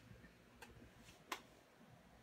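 Near silence with a couple of faint clicks as bare feet step onto a glass bathroom scale, the clearer click a little past the middle.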